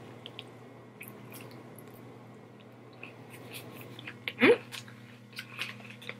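A person chewing a mouthful of lettuce-wrapped burger: quiet, irregular small clicks and mouth sounds, with a brief "mm-hmm" about four seconds in.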